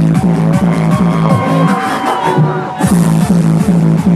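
Hardstyle dance music played loud over a truck sound system, driven by a fast, pounding kick drum. About a third of the way in the kick drops out for a short melodic break, then comes back in.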